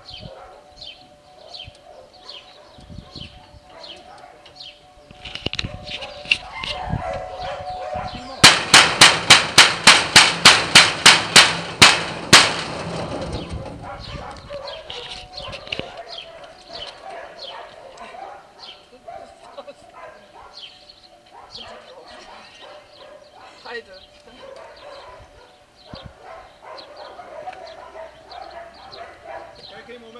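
A rapid run of about a dozen loud, sharp metallic bangs, evenly spaced at about three a second, starting about eight seconds in and lasting about four seconds. Faint short chirps repeat in the background throughout.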